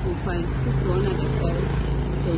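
Indistinct voices talking over a constant low rumble, with a steady hum setting in about half a second in.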